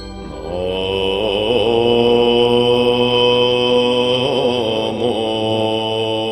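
Background music of a chanted mantra: a voice holding long, slightly wavering notes, entering about half a second in, over a steady high tone.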